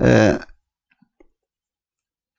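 A man's speaking voice trails off in the first half-second, then a pause with two faint small clicks about a second in.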